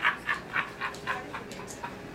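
A person laughing in short bursts, about four a second, fading away.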